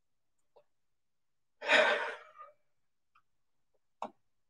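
A single audible sigh, a breathy exhale of under a second, about a second and a half in.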